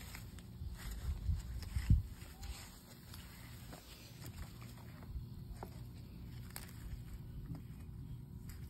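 Leaves rustling and the handheld phone bumping as hands search through the garden foliage, with scattered small clicks and one louder thump about two seconds in.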